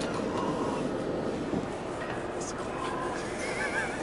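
Steady in-cabin drone of a Prevost X345 coach's Volvo D13 diesel engine and drivetrain running, heard from a passenger seat. A brief wavering high squeal comes about three and a half seconds in.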